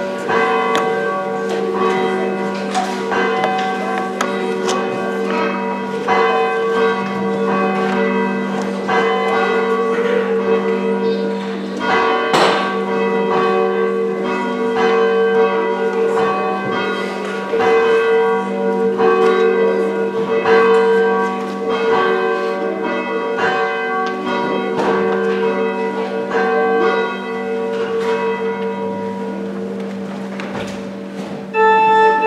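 Church bell ringing before the service: struck over and over, about once a second, each stroke ringing on into the next.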